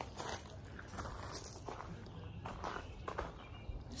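Faint shuffling footsteps: a few soft, irregular scuffs.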